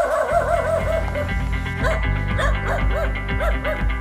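A puppy yelping in a rapid run of short, high cries, about six a second for the first second and then more scattered, over background music.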